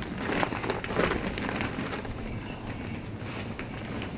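Synthetic tarp and hammock fabric rustling and crinkling as someone shifts about and sits up inside a hammock shelter, in irregular crackles.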